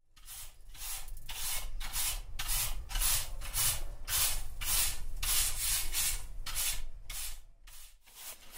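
A chimney sweep's bristle brush scrubbing inside a brick chimney flue, in an even rhythm of rasping strokes about two a second, over a low rumble.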